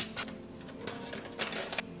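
A few brief rustles of a foil seasoning sachet as dill dip-mix powder is shaken out over popcorn in a steel pot, the longest rustle near the end, with soft background music underneath.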